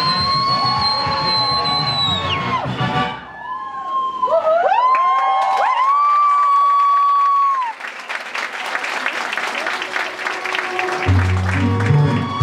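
Show music ending on a held high note, then an audience whooping and cheering with overlapping rising and falling cries, followed by a few seconds of applause. Near the end a new piece of music with a strong bass line and guitar starts.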